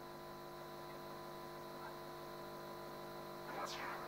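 Steady electrical mains hum, a stack of even tones, on a videoconference audio feed that carries no voice. A faint brief sound comes about three and a half seconds in.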